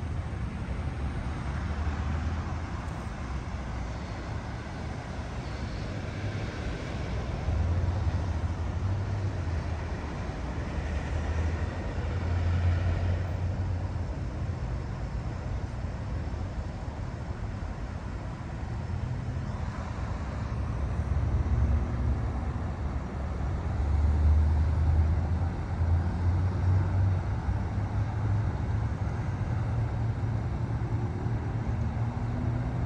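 Road traffic: a steady outdoor rumble of vehicles, swelling now and then as one passes.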